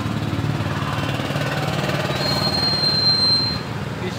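A motor vehicle engine running steadily close by, with a thin high-pitched whine for about a second and a half past the middle.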